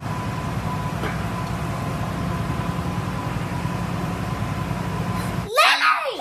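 A steady low background rumble with a faint steady tone. About five and a half seconds in, a child gives high-pitched excited squeals that slide up and down in pitch.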